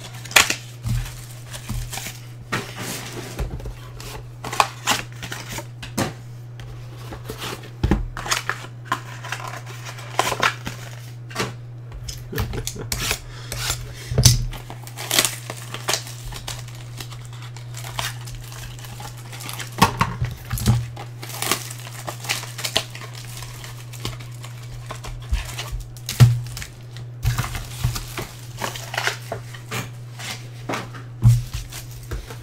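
Plastic wrap on trading card packs crinkling and tearing as it is pulled off by hand, with frequent sharp clicks and clatter of hard plastic card cases being handled. A steady low hum runs underneath.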